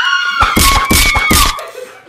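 A high-pitched shriek of laughter held for a moment, then a quick run of four or five loud slaps about half a second in, under a fainter continuing squeal that fades near the end.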